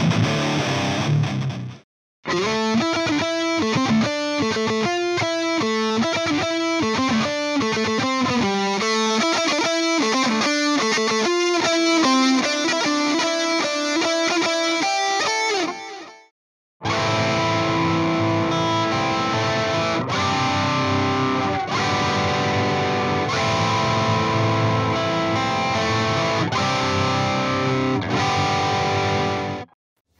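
Distorted high-gain electric guitar through an EVH 5150 III LBX 15-watt all-tube amp head, recorded with cabinet impulse responses. A ringing chord stops about two seconds in. Then comes a fast, choppy riff of rapid pitched notes for about fourteen seconds, a short break, and held distorted chords that ring until the sound cuts off near the end.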